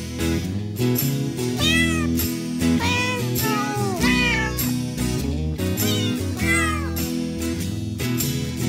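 A cat meowing several times, short rising-and-falling calls, over background music with a plucked guitar.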